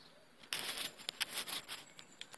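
Rustling, scraping and clicking handling noise lasting about a second and a half, starting about half a second in: the phone being moved and set in place.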